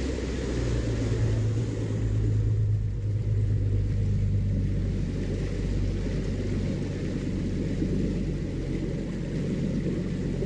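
Bass boat's outboard motor running steadily under way, with a low engine rumble, water noise off the hull and wind on the microphone. The wind noise eases after the first couple of seconds as the boat slows.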